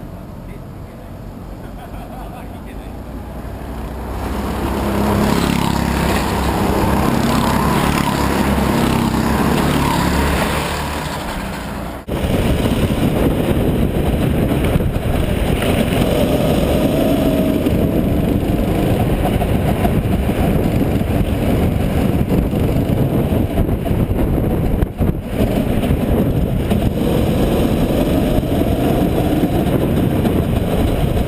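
Rental go-kart engines. A kart comes past the trackside, its engine growing louder about four seconds in and then fading. After a sudden cut, the kart's own engine runs hard and steadily as it laps the circuit close behind another kart.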